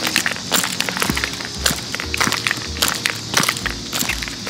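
Footsteps at a steady walking pace, about two a second, with dense crackling clicks over them.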